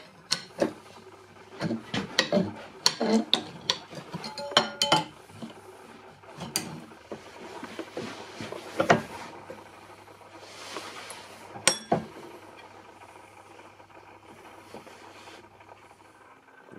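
Metallic clinks and knocks from working a bent metal topcase mounting clip in a bench vise: quick irregular taps for the first few seconds, some ringing briefly, then a few single strikes spaced seconds apart.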